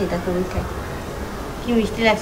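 A person's voice in short, repetitive phrases, with held notes, heard in the first half-second and again near the end.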